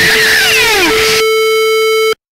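Harsh electronic noise music: a dense wash of noise with falling whistling glides over a steady tone. About a second in, the noise drops away, leaving a steady buzzing electronic tone that cuts off abruptly.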